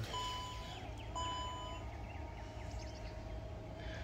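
A Jeep's power liftgate closing: its warning chime beeps twice, each beep under a second long, while the liftgate motor hums steadily from about a second in.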